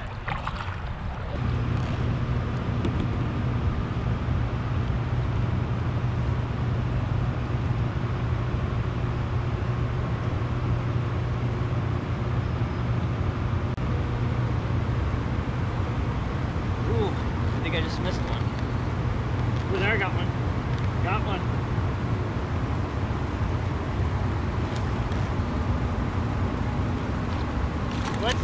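A steady low mechanical hum with an even rushing noise, coming in about a second in and holding level, like a small motor running; a few faint short calls or voices sound a little past the middle.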